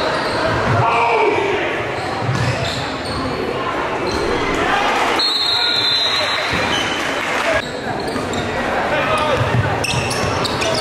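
Live game sound in a large gym: a basketball bouncing on the hardwood court, with several dull thumps, over a steady din of crowd and player voices that echo in the hall.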